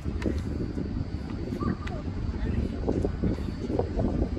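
Steady low rumble of wind on a phone microphone, with faint distant voices.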